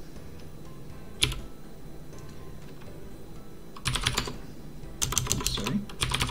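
Typing on a computer keyboard: a single keystroke about a second in, then two quick runs of keystrokes in the second half.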